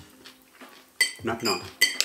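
Metal cutlery clinking against a ceramic plate: two sharp, ringing clinks, one about a second in and one near the end, as a knife and fork cut food on the plate.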